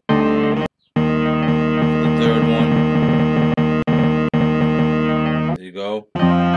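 A chopped slice of a sampled record playing back from an Akai MPC Studio: a sustained musical chord that cuts off abruptly under a second in, restarts a moment later, and plays for about five seconds before cutting off again near the end. The slice is being auditioned while its start point is trimmed.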